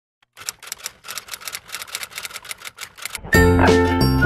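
A fast run of sharp, typewriter-like clicks, about seven a second, then loud background music with a strong bass and bright melody starts a little over three seconds in.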